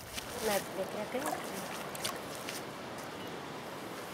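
Water sloshing gently in a plastic basin as a small child sits and moves about in it, with a few brief, faint voice sounds in the first second or so.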